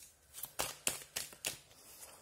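Tarot cards being handled: a quick run of about six crisp card flicks and snaps within a second, as the next card is drawn from the deck.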